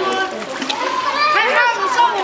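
Children's voices calling out, high and rising and falling, over water splashing as they cross a sewage-flooded street.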